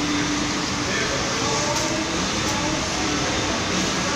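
Steady mechanical hum of parked coaches' engines and air-conditioning, with faint voices in the background.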